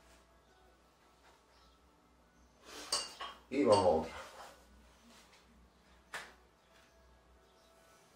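Plates of an adjustable iron dumbbell clinking and clattering as it is picked up and lifted, in a loud burst about three to four seconds in, with one short metallic click a couple of seconds later.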